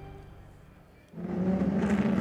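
A music bed fades away, then about halfway through the engines of a field of GT race cars cut in, a steady drone of cars circulating at low speed under caution.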